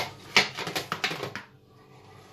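A quick, irregular run of sharp clicks and small knocks over the first second and a half, loudest at the start, then nearly quiet: hard things being handled.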